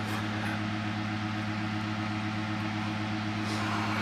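A steady low hum with a faint hiss under it, even in level throughout.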